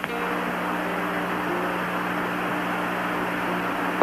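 Steady hiss with a low electrical hum on a mission-commentary radio audio line, with no voice on it.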